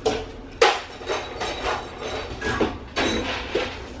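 A series of short knocks and clinks from a scoop hitting the dog bowls and food container as dog food is scooped out, the loudest about half a second in.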